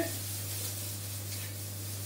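Stir-fry vegetables sizzling in a pan on a gas hob with a steady hiss, just after soy sauce has gone in, over a steady low hum.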